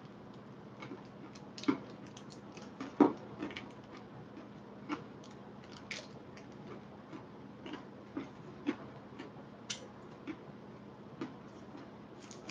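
Quiet, irregular crunches from chewing a Daim bar, a hard, crunchy almond-toffee candy coated in milk chocolate, with a few louder crunches among many small ones.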